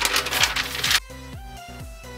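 A sheet of decoupage paper rustling and crinkling loudly as it is handled and bent. The rustle cuts off suddenly about a second in, leaving background electronic music with a steady beat.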